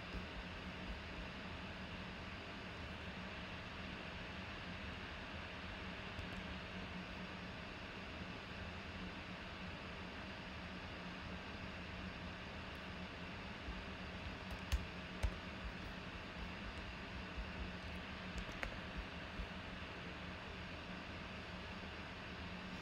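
Faint, scattered clicks of typing at a computer keyboard, more frequent in the second half with two louder clicks, over a steady low hum of room noise.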